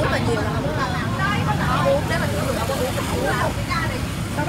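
Voices talking, with indistinct chatter in the background, over a steady rumble of road traffic passing on the street.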